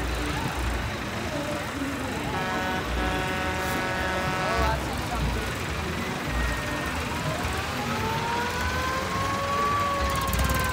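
A siren winding up, its pitch rising over the last three seconds. Earlier, a steady pitched tone is held for about two and a half seconds. Both sound over street and crowd background.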